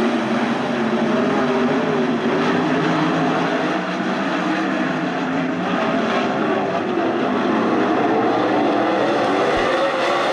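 A pack of winged 410 sprint cars racing, their 410-cubic-inch V8 engines running hard at high revs together, so that several engine notes overlap and waver at a steady loudness.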